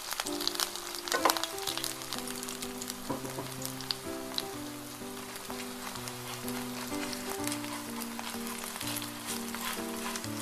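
Kimchi pancake batter frying in oil in a nonstick pan, sizzling with many small pops as a wooden spatula spreads it thin. Background music plays throughout.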